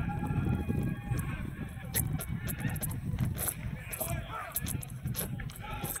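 Faint, distant voices of spectators and players around a baseball field over a steady low rumble, with a few short clicks.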